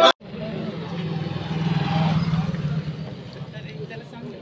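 A motor vehicle passing by on the road, its engine hum swelling to a peak about two seconds in and then fading, with scattered crowd voices underneath.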